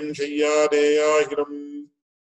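A man chanting a verse in a steady, held intoning voice on a near-level pitch, breaking off just before the end.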